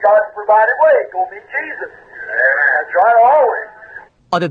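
Speech from an old, narrow-band recording of a sermon: a thin, tinny voice like one heard over a radio or telephone.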